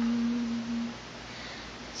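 An unaccompanied singer holding one long, steady sung note, the last syllable of a phrase, which stops about a second in. A quiet pause with faint background hiss follows until the next phrase begins.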